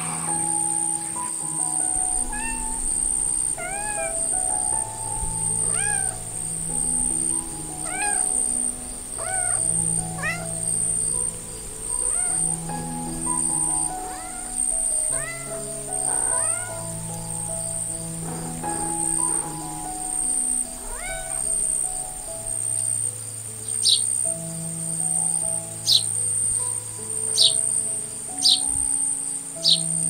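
A kitten meowing over and over, about one meow every two seconds, over calm background music with slow held notes. Near the end a few short, sharp, high bird chirps take over.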